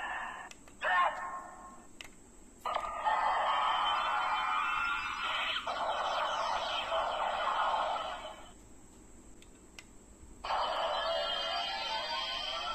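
Electronic sound effects played through the small speaker of a Black Tiga Spark Lens transformation toy: two short bursts, then one long effect of about six seconds, a brief lull, and another effect starting near the end.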